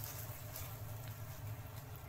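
Bamboo shoots sizzling faintly and steadily in a frying pan over a gas burner, over a steady low hum.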